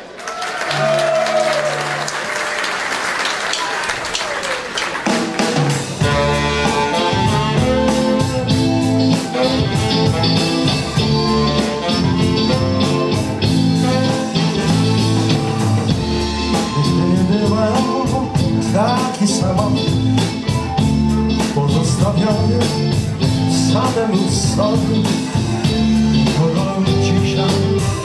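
Audience applause, then about five seconds in a rock-jazz band starts playing an instrumental intro with a steady drum beat, bass, electric guitar, keyboard and tenor saxophone.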